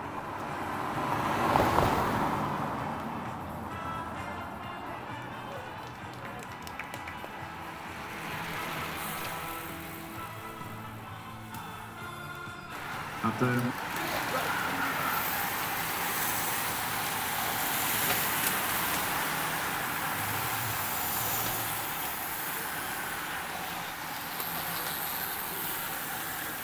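A car drives past, loudest about two seconds in, followed about halfway through by a long pack of racing bicycles rushing past on brick paving, a steady hiss of tyres and freewheels. A public-address voice and music sound faintly in the background.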